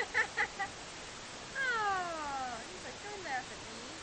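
A baby making short vocal sounds while mouthing a plastic teething ring, then one long whine that falls steadily in pitch for about a second, followed by a few small squeaks.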